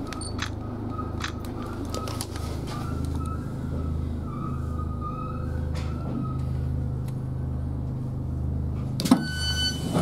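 Inside a Southern Class 313 electric train slowing into a station: a steady low running hum that pulses about once every 0.7 s, with scattered light clicks. About nine seconds in, the passenger door opens with a sudden knock and a high beeping door tone starts.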